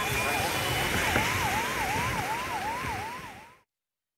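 A siren sounding a fast repeating rise-and-drop wail, about two and a half cycles a second, over a steady rushing noise. It fades away and cuts to silence near the end.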